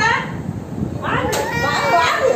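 Young children's voices at close range, with a toddler fussing and starting to cry. A single sharp click comes just past the middle.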